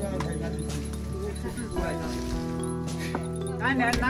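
A man's voice chanting in long, steadily held tones, typical of a Magar shaman's ritual chant. Near the end it gives way to a quickly wavering, rising-and-falling call.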